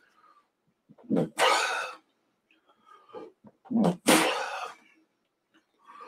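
A man coughing twice, once about a second in and again about four seconds in, each a short throaty onset followed by a loud rough burst.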